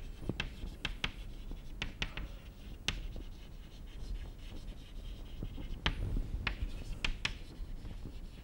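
Chalk writing on a chalkboard: irregular sharp taps as the chalk strikes the board, with faint scratching strokes in between.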